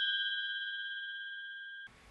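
A single bell-like ding, struck just before and ringing on with one clear tone and a few higher tones above it, slowly fading. It cuts off suddenly near the end.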